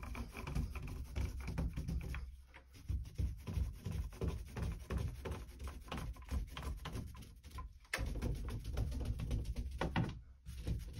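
A 4-inch microfiber paint roller rolled back and forth over a wet-primed door panel: quick repeated rubbing strokes with a low rumble from the door. The strokes pause briefly about two and a half seconds in and again just before eight seconds.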